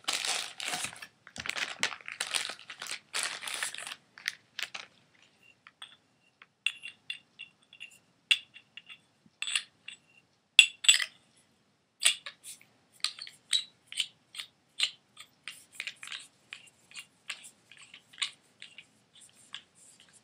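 A two-piece fifteen-inch paintball barrel being handled and screwed together. Rustling and rattling for the first few seconds, then a long run of sharp, light clicks and ticks at an irregular pace.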